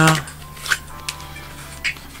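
Tarot cards being handled on a table: two short card flicks about a second apart, over faint background music.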